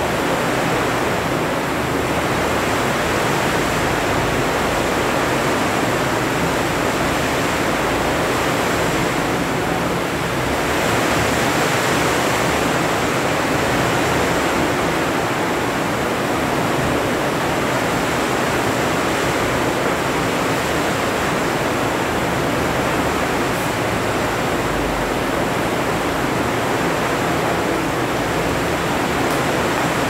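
Loud, steady hiss of electronic noise on the audio feed, an even rushing with no breaks: the bad sound that viewers reported on the live stream while its audio is being adjusted.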